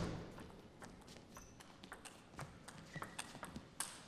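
Table tennis rally: a quick, irregular run of faint, sharp clicks as the celluloid-type ball is hit by the rubber-covered bats and bounces on the table.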